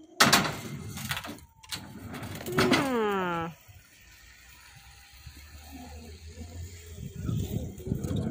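Surf skateboard wheels rolling on a concrete skatepark floor, a low rumble that builds toward the end, with sharp clattering noise about a quarter second in. Around the middle a voice calls out once, falling in pitch.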